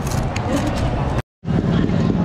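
Busy street ambience: background voices and motor vehicles running. The sound cuts out completely for a moment about a second in.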